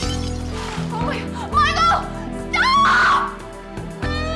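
A woman screaming and crying out over dramatic background music, in two loud, high-pitched outbursts about a second apart in the second half.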